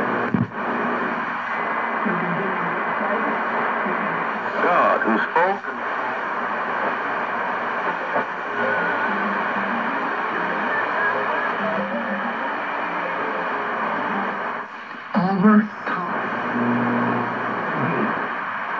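Hammarlund HQ-100A tube communications receiver being tuned across the band: steady static hiss with weak, fading voices and music, and whistles that sweep up and down in pitch twice, about five and fifteen seconds in, as the dial passes stations.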